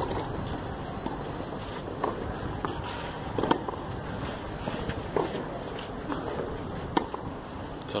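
A tennis rally on a clay court: a series of sharp racket-on-ball hits every one to two seconds, over steady wind noise on the microphone.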